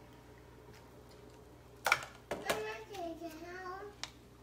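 A toddler's voice: a loud "down!" about two seconds in, then a drawn-out, wavering whine. The child is asking to be let down.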